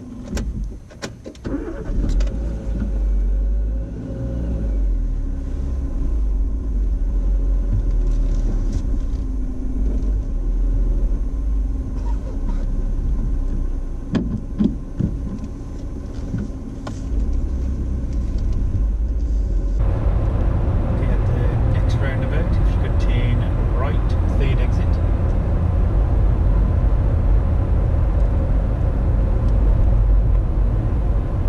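Car engine and cabin noise heard from inside a car moving slowly, with occasional clicks and knocks. About two-thirds through it changes abruptly to louder, steady engine and tyre road noise as the car drives along at speed.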